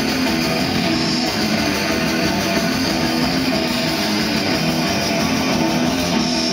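Heavy metal band playing live: electric guitar, bass guitar and drums, loud and dense, with a repeating riff over fast drumming.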